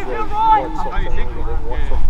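Men's voices talking and calling out across a soccer pitch during play, over a steady low rumble.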